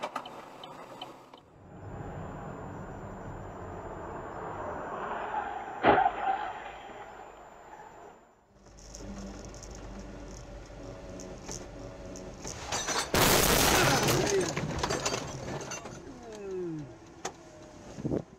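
Dashcam recordings of road crashes. First comes road noise with one sharp bang about six seconds in. Then a second recording has a loud crash, a white SUV hitting the front of a police patrol car, lasting about a second and a half, about thirteen seconds in.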